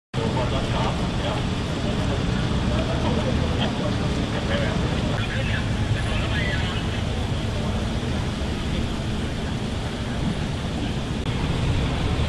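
Steady low rumble of a vehicle engine and road noise as a trolley bus drives along, with people's voices chattering over it.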